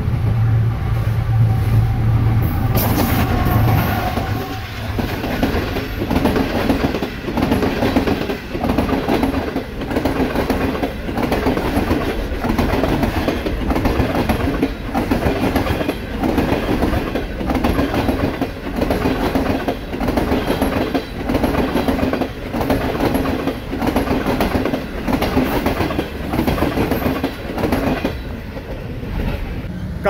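GE-built GEU-40 diesel-electric locomotive passing close at speed, its engine loud for the first few seconds, followed by the passenger coaches' wheels clattering over the rail joints in a steady rhythm.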